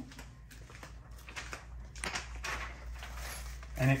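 Faint handling noises, scattered light clicks and a soft rustle of plastic packaging as a bagged gasket material kit is picked up, over a low steady hum.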